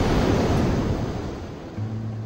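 Blast wave of a nuclear test explosion: a loud rush of noise with no clear pitch, strongest at the start and dying away over about two seconds.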